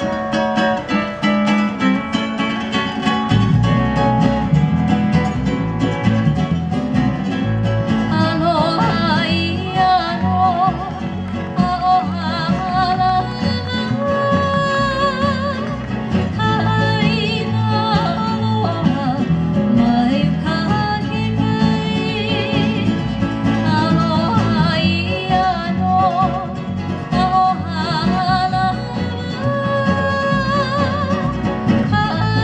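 Live Hawaiian string band playing a song: ukuleles and guitar strum an introduction, a low bass line joins a few seconds in, and a woman's high voice begins singing, with vibrato, about eight seconds in.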